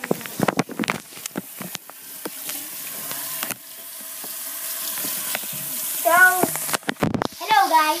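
Bathroom tap running into a sink while hands rub and squeeze a lump under the stream, with many small clicks and splashes in the first few seconds. The water hiss grows steadily louder from about halfway through.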